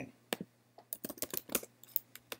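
Computer keyboard typing: about ten irregular keystrokes, a quick cluster of them about a second in.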